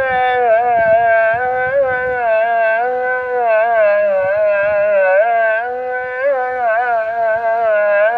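A muezzin's male voice chanting the ezan, the Islamic call to prayer, in long melismatic lines whose pitch wavers and turns without a break.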